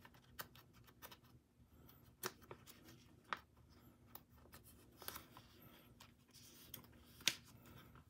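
Faint rustling and light clicks of photocards being slipped into clear plastic binder sleeves, a handful of small ticks spread over a quiet room, the sharpest about seven seconds in.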